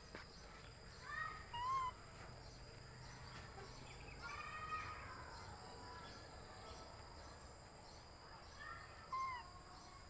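Faint, high-pitched chirping animal calls in three short bouts: about a second in, about four seconds in, and near the end. They sound over a quiet outdoor background.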